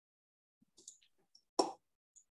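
A few faint clicks of a computer mouse and keyboard, then one sharper, louder click about a second and a half in.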